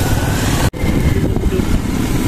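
A road vehicle on the move: a steady low engine-and-road rumble with wind noise, which cuts out suddenly for a moment under a second in.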